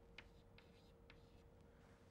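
Near silence with faint chalk taps and strokes on a blackboard as letters are written, a few light ticks.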